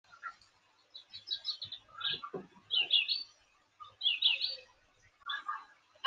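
A bird chirping in several short bursts of quick, high calls, with brief pauses between them.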